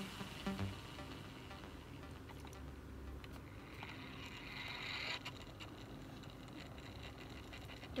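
Quiet steady low hum, with a brief rustling scrape about three and a half to five seconds in as a hand handles the die-cast cars on their display stand.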